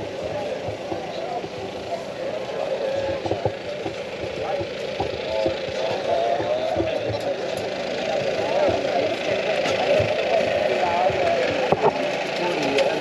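Indistinct overlapping voices of people talking in the background, none of them clear, over a steady outdoor hubbub with irregular low rumbles.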